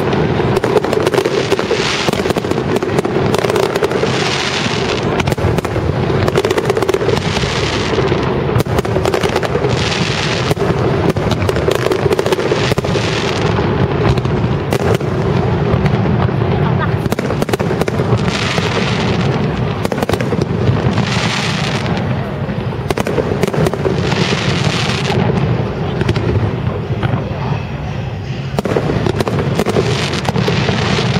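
Aerial fireworks display: shells bursting in a dense, continuous barrage of bangs, with recurring spells of crackling hiss from the bursting stars.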